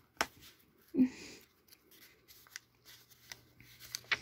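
Glossy catalog pages being handled: a few soft clicks and paper rustles, with a brief voiced sound from a person about a second in. Near the end the paper rustle builds as a page begins to turn.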